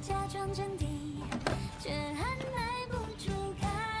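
A Mandarin pop song playing, a singer's voice carrying the melody over the backing.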